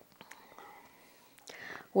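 Faint whispered murmur and a few soft mouth clicks from a woman pausing before she answers, with her voice starting right at the end.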